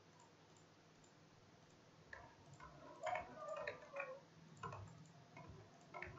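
Faint computer keyboard typing and mouse clicks: a scattering of light clicks starting about two seconds in, after near silence.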